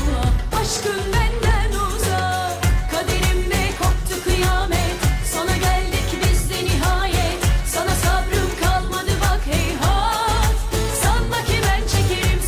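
A female singer sings a Turkish pop song live into a handheld microphone, with ornamented, wavering vocal lines over music with a steady beat.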